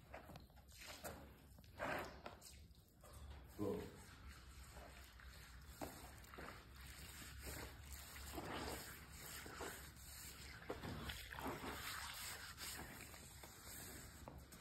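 Faint splashing of water tipped from a bucket onto a freshly sawn wooden slab, then soft swishing and wiping as a hand spreads the water over the wet wood.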